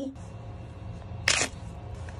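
A single brief crinkle of plastic packaging a little past halfway, as the squishy fish toy's blister pack is handled, over a steady low hum.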